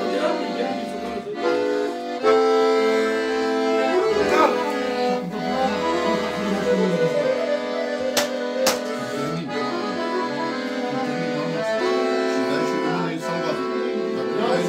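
An accordion played live, holding sustained chords and melody notes that change every second or two. Two sharp clicks cut through the music a little over eight seconds in.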